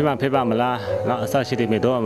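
Speech only: a man talking in a low voice, in short phrases.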